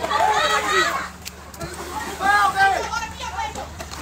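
Excited high-pitched shouting and yelling from a group of young people, in bursts near the start and again about two to three seconds in, over a faint steady hum.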